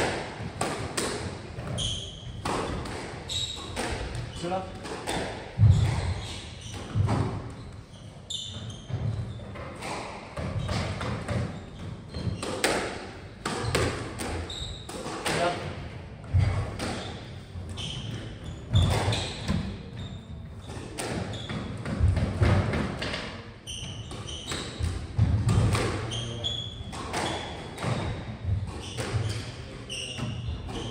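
Squash play in a walled court: the ball struck sharply again and again by racquets and off the walls, with low thuds and short squeaks of shoes on the wooden floor, all echoing.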